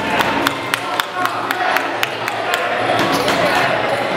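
A fast, even run of sharp slaps, about four a second, stopping shortly before the end, over crowd voices in a large hall.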